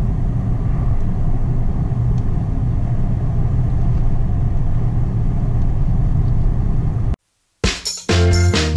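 Steady low rumble of a car driving on a paved road, heard from inside the cabin. It cuts off abruptly about seven seconds in, and music with a beat starts just before the end.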